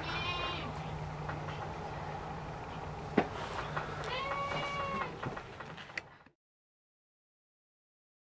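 An animal calling twice: a short, high call right at the start and a longer, lower drawn-out call about four seconds in, with a sharp click between them over a steady low hum. The sound cuts off abruptly about six seconds in.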